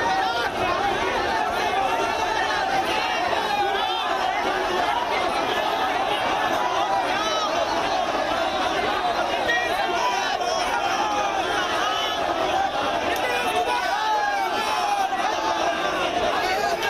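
A large crowd of protesters shouting over one another, many voices at once, loud and steady throughout.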